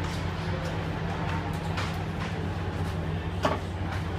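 A steady low hum with a few scattered knocks and clatter from work on a sidecar racing outfit. The sharpest knock comes about three and a half seconds in.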